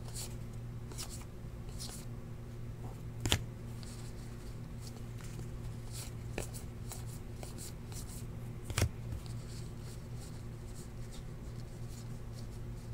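Trading cards being flipped through by hand, card stock sliding and flicking against card in a string of soft short sounds, with two sharper clicks about three seconds in and near nine seconds. A steady low hum runs underneath.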